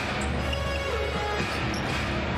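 Music playing over steady arena noise at a basketball game, with faint ball and court sounds under it.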